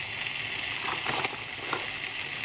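Shredded cheese sizzling as it lands on the hot plate of a preheated mini waffle maker: a steady, high hiss with a few faint crackles midway.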